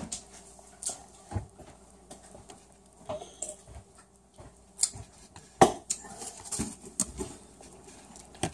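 Scattered light clicks and knocks from a pair of metal scissors being handled against a rubbery squishy toy over a plastic tub. The loudest knock comes about five and a half seconds in.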